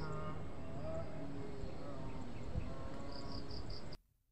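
Outdoor ambience with an insect chirping in short, evenly spaced high pulses, about four a second, heard near the start and again near the end. All sound cuts off suddenly just before the end.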